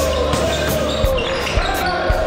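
A basketball bouncing on a sports-hall floor as it is dribbled up the court, with three or four thuds about half a second apart, over the general noise of play.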